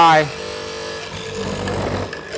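A 1 hp (750 W) benchtop hollow-chisel mortiser running with a steady motor hum as its auger and square chisel are pressed down into teak. The cutting noise grows louder in the second half. The machine plunges easily, since teak is a fairly soft wood.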